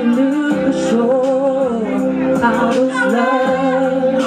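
A karaoke singer singing over a backing track, holding long notes with a wavering vibrato.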